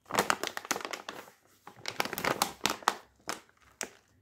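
Crinkly plastic Doritos Dinamita chip bag crackling as it is handled and turned over in the hands. It comes in two spells of dense crackles with a quieter pause between.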